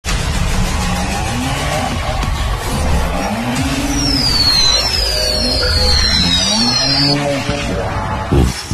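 A vehicle engine revving up and down three times, with a run of four or five short, high, falling squeals like tyre squeals in the middle, over music.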